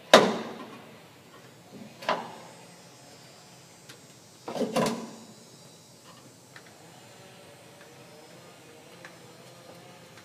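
Sharp clacks and knocks of hand tools and stiff copper wire being handled against metal electrical panel and meter boxes: the loudest just as it starts, then others about two and about four and a half seconds in, with faint handling noise between.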